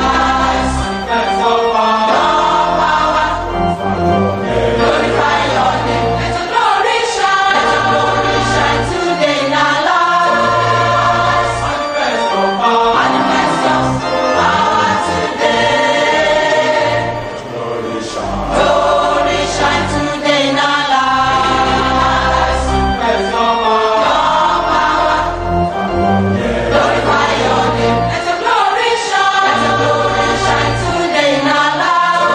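Gospel choir singing with sustained, chord-like notes over a steady bass line.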